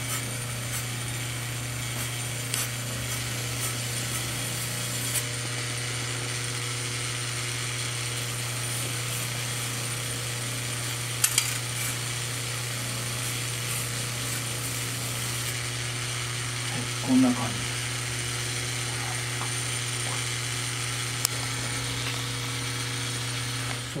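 Electric motor spinning an abrasive polishing wheel while a tin-plated grater blank is held against it to smooth its surface: a steady motor hum under a grinding hiss, with a few brief clicks.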